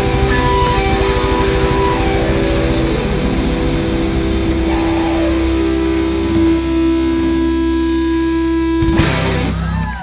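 Live rock band of electric guitars, bass, drums and keyboards playing the closing bars of a song: a long held chord over the drums, ending on one loud final hit about nine seconds in that rings out briefly.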